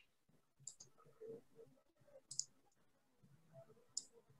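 Near silence broken by three faint clicks, about a second and a half apart.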